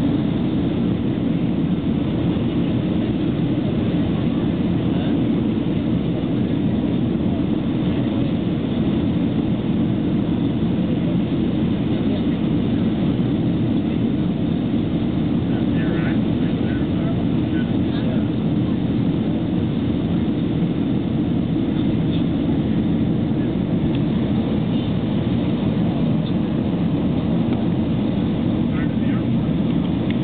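Steady, even cabin noise of an Airbus A319 on descent, its jet engines and the airflow over the airframe heard from inside the passenger cabin.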